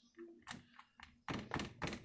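Dull knocks and clunks of a plastic jug and pastry brush against a metal baking tray: one near the start, then a quick run of several near the end.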